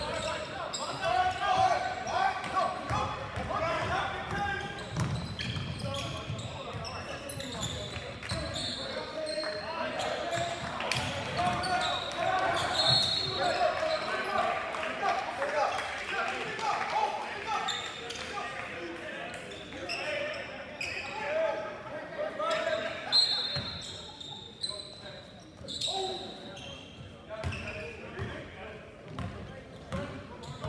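Live basketball game in a large gym: the ball bouncing on the hardwood court and a few short high sneaker squeaks, over constant indistinct talk from players and the sparse crowd.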